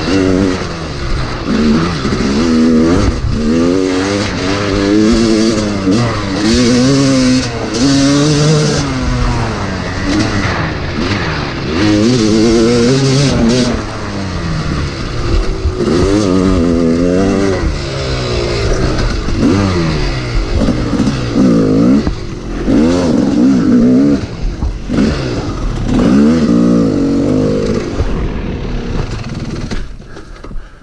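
Yamaha YZ250 single-cylinder two-stroke dirt bike engine being ridden hard, its pitch rising and falling over and over as the throttle is opened and closed through the trail's turns and shifts. It falls away near the end as the bike slows.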